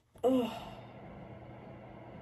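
A woman's short, voiced sigh as she stretches, loud and brief just after the start. It is followed by a steady low room hum.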